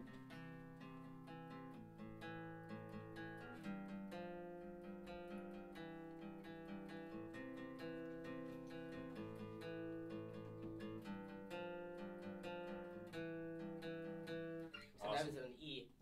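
Two acoustic guitars playing a short riff together, strummed and picked chords, for about fifteen seconds before stopping. It is played outside its intended key of D, which sounded weird to the players.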